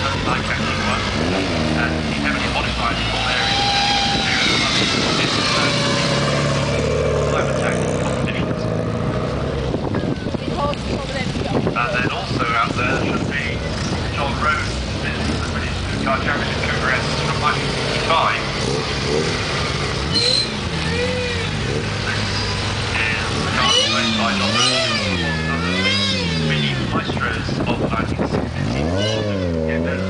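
Classic and modern Mini cars driving slowly past one after another, engines running, mixed with indistinct voices and, in the last third, a rising-and-falling wailing tone.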